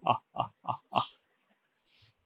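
A man's menacing villain's laugh, 'ha-ha-ha', in quick pulses about three a second that grow fainter and stop about a second in.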